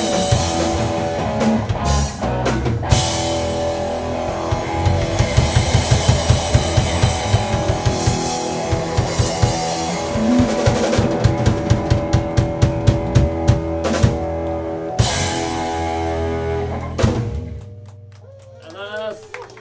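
Live rock band of electric guitar, electric bass and a TAMA drum kit playing loud and fast, with runs of quick drum strokes and several sharp ensemble hits. The song ends on a final hit near the end.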